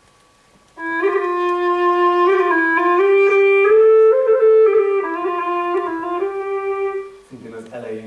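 Bawu, a Chinese free-reed wind instrument, playing a short slow melody about a second in. It steps up a few notes, then comes back down and ends on a long held low note.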